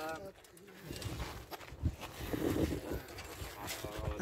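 A low cooing bird call about two and a half seconds in, over faint murmuring voices.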